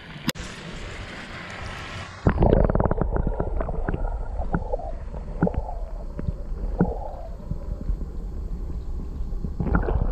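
Action camera plunged underwater: about two seconds in, the sound suddenly turns muffled, and a loud low rumble of water moving against the camera housing runs on, with scattered knocks and clicks. Before it goes under there is a faint open-air hiss with one sharp click.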